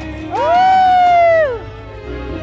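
A woman's long amazed exclamation, one call that rises in pitch, holds for about a second and falls away, over background music.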